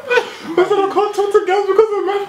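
Several young men laughing: a run of short, repeated chuckles that starts about half a second in.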